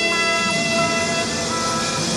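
Live jazz-fusion band music: several long notes held together. About half a second in, one note steps to a new pitch and a lower note swells in; a little past the middle, some of the upper notes stop.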